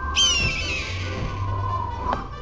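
An eagle's cry used as a cartoon sound effect: one high, slightly falling screech that fades into a hiss. It sounds over a low rumble and background music.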